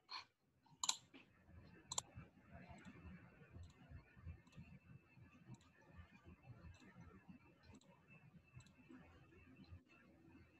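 Computer mouse clicks: three sharp clicks in the first two seconds, then only faint scattered ticks over low room noise, the whole mostly near silence.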